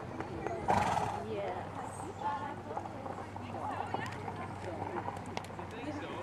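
A horse whinnies loudly about a second in, over low background chatter of people talking.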